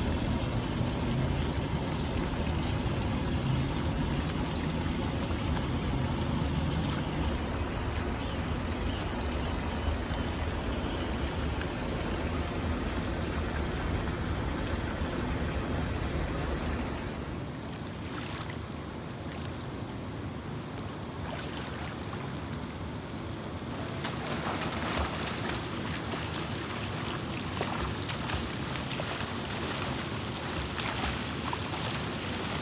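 Swimming-pool water running and lapping, a steady rush that drops to a softer wash about 17 seconds in. Scattered splashing comes near the end.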